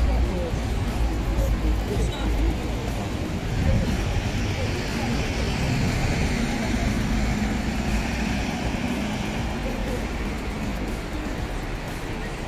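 City street ambience: traffic noise with a vehicle passing through the middle, over a steady low rumble, and voices of passers-by.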